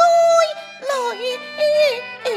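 Cantonese opera duet music: a high melodic line that wavers and slides between notes, in phrases broken by short breaths, over steady instrumental accompaniment.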